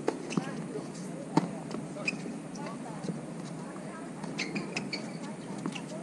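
Tennis ball being struck by rackets and bouncing on a hard court during a doubles rally: a series of sharp pops, the loudest at the very start and about a second and a half in.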